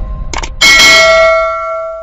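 Closing of a song: the backing music thins out, then a bell-like tone is struck about half a second in and rings, dying away.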